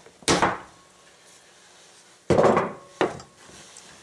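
Side cutters snapping through a heavy-duty extension cord, a single sharp cut. About two seconds later come two knocks of the tool being set down on a wooden workbench.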